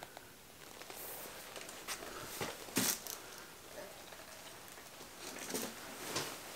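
Faint handling noise: leather jacket rustling with a few light clicks and knocks, the sharpest a little under three seconds in.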